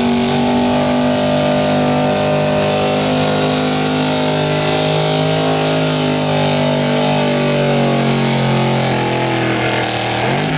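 Engine of a square-body Chevrolet pickup running at full throttle under load as it drags a weight-transfer sled, holding a steady high pitch that sags slightly near the end.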